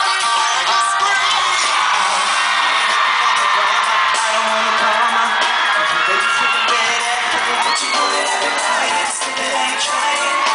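Live pop music playing over an arena sound system, heard from among the audience, with fans screaming and cheering over it.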